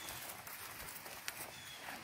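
Faint footsteps of a person walking on dry forest floor, a few soft irregular crunches.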